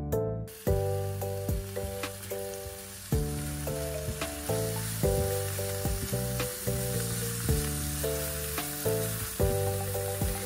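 Shrimp, egg and rice sizzling in a hot frying pan as they are stirred with a silicone spatula. The hiss starts about half a second in, over steady background music with a picked melody.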